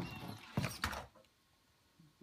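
Redcat RS10 RC rock crawler rolling over off a stair step onto a hardwood floor: a click and a few sharp knocks within the first second as it tips and lands. The heavy body shell makes it top-heavy and prone to flopping onto its side.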